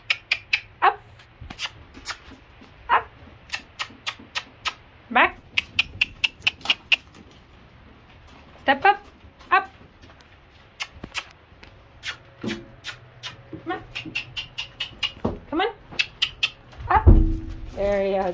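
Handler's tongue clicks and short kissing noises urging a horse to step up into a trailer: many sharp, irregular clicks with a few brief sliding squeaks between them. A louder low thump comes near the end.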